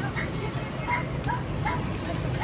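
Steady car-cabin road and engine noise at highway speed, with several short, high squeaks that rise and fall.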